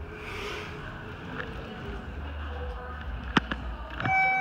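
Low steady hum of a hydraulic elevator running as the car comes to the landing, with a single sharp click about three seconds in.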